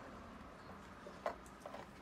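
Quiet room tone with a few faint, short clicks, the clearest about a second in.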